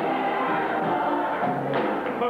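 Gospel choir and congregation singing together, many voices holding and moving between notes, with a sharp hit near the end.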